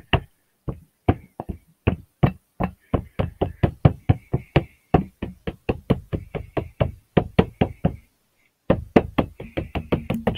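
A nearly empty plastic bottle of craft black acrylic paint being knocked and shaken upside down against the work surface to get the last paint out: rapid sharp knocks, about five a second, pausing briefly twice.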